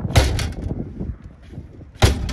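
The tailgate of a 1993 BMW E34 525i wagon is slammed shut with a heavy thud near the start, followed by a short rattle of the lid that dies away. A second slam comes right at the end. The sticking latch is not catching.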